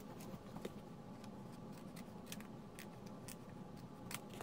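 Faint, irregular clicks and rustles of paper cardstock being handled and cut with scissors.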